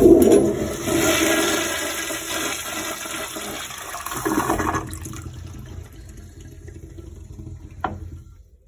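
Commercial flushometer toilet flushing: a sudden loud rush of water into the bowl, a second surge about four seconds in, then tailing off to a quieter refill. A short click near the end.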